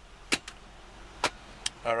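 Four short, sharp clicks of hard car-interior trim being handled in the centre console, the first the loudest, over a faint steady background hum; a man's voice starts near the end.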